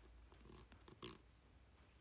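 Near silence: room tone with a few faint clicks and one short, breathy puff of a person's breath about a second in.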